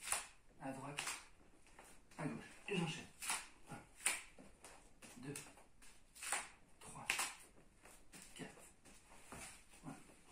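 A man breathing hard through a dynamic plank: sharp exhalations and short voiced grunts, roughly one every second or so.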